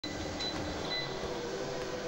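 Treadmill running steadily under a walker, a steady motor and belt hum, with two brief faint high tones about half a second and a second in.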